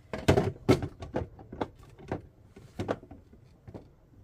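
A string of irregular hard plastic knocks and clicks as the lid of a Kuvings REVO830 slow juicer is pushed down and twisted on its juicing bowl, not yet locking into place.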